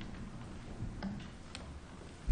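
Faint room tone with low hum and a couple of light clicks in the second half.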